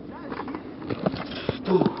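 Inline skate wheels rolling over concrete, a steady rumbling hiss that grows a little louder as the skater closes in, with a couple of sharp clicks and faint voices.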